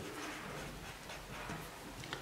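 Faint scratching of a ballpoint pen on paper as a few letters are written.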